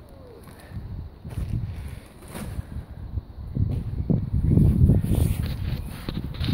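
Low, irregular rumbling of wind and handling noise on a phone microphone as it is carried across the garden, growing much louder about halfway through. A faint bird call sounds near the start.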